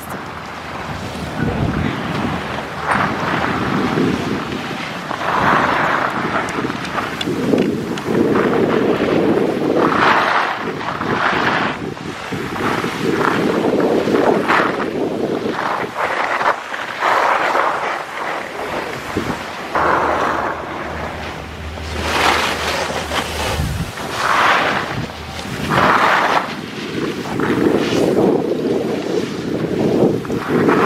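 Wind buffeting the microphone of a downhill skier, with skis scraping and hissing over packed snow. The sound swells and shifts every second or two with the turns.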